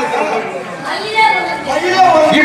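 Speech: actors trading stage dialogue over microphones.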